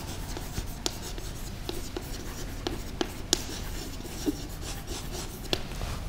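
Chalk writing on a blackboard: short scratchy strokes and scattered sharp taps as a sentence is written out.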